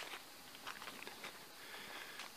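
Faint footsteps on a dirt forest path, with a small click at the start.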